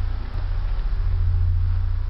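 A deep, steady droning hum that swells and dips in a repeating loop about every two seconds.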